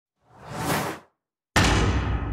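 Title-sequence sound effects: a whoosh that swells up and fades away within the first second, then a sudden heavy hit about halfway through that rings out in a long fading tail.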